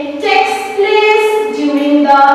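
Singing in a high voice, long notes held and stepping from one pitch to the next.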